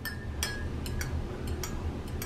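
Metal spoon stirring honey into hot tea in a glass mug, clinking against the glass several times with a brief ring after some strikes.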